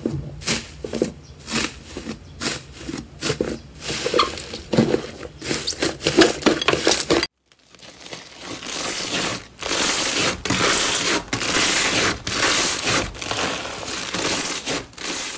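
Foil sheet over an inflated slime dome crinkling and crackling under pressing fingers in short strokes about twice a second. After a brief break about seven seconds in, yellow foam-bead slime is squeezed by hand, crunching and crackling in longer, denser squeezes.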